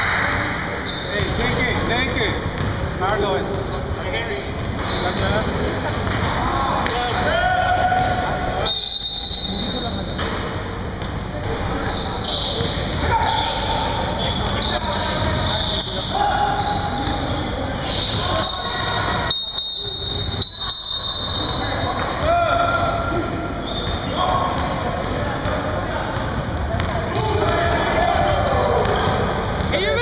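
A basketball bouncing on a hardwood gym floor during a game, with voices of players and onlookers talking and calling out across a large, echoing gym.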